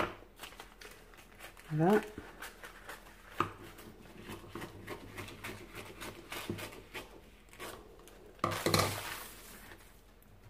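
Scissors snipping through a sheet of baking paper, with small clicks of the blades and light paper rustling, and a louder crinkle of the paper near the end.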